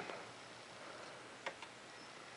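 Quiet room tone with two faint, short clicks close together about a second and a half in.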